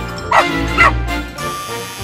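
A dog barking twice, about half a second apart, dubbed in for the plush German shepherd, over steady background music.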